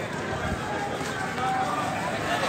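Indistinct voices of people talking in the street over a steady bed of outdoor noise.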